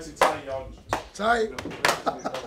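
Men's voices calling out in short excited exclamations, with sharp claps near the start and again near the end.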